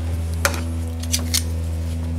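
Knife slicing through a grilled punta de ganso (picanha) on a wooden cutting board: a few short, sharp cutting sounds, one about half a second in and two more close together a little after a second.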